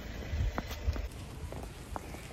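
Footsteps of rubber boots walking on trampled snow: a few soft thuds with light crunches, roughly two steps a second.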